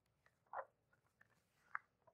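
Near silence broken by two short, faint rustles of sheets of paper being handled, about half a second in and again near the end.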